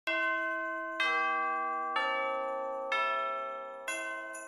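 Four bell-like chime notes about a second apart, each ringing out and fading, mostly stepping down in pitch, with a quick tinkle of high strikes near the end. It is an intro music sting.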